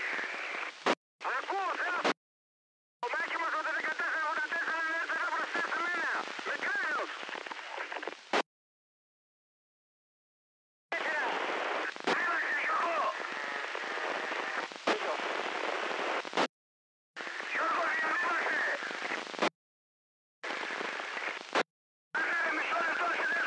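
Narrowband FM two-way radio traffic on 38.450 MHz played through an SDR receiver: six short transmissions, the longest about five seconds, each full of hiss and carrying garbled, unintelligible voice. The squelch opens and shuts around each one, cutting it off with a click and dead silence between.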